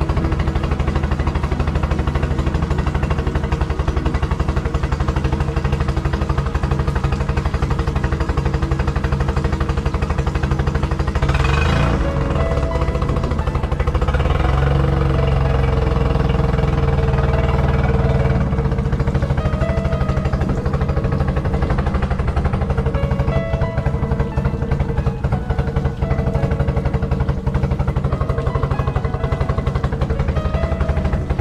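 Honda four-stroke outboard motor running steadily on its mount, getting louder for several seconds around the middle before settling back.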